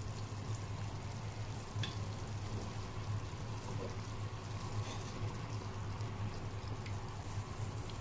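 Laing of taro leaves and pork simmering in coconut milk in a pot, bubbling steadily over a low steady hum, with a couple of faint clicks.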